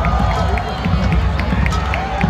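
Marching band playing in a stadium, heard from the stands over nearby crowd talk, with a sharp tick repeating evenly about four times a second.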